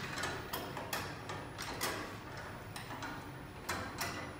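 A few irregular, sharp light clicks and taps of metal at a letter-bending machine, over a steady low hum.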